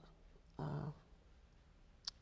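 A woman's brief hesitation sound, "uh", in speech; the rest is quiet room tone.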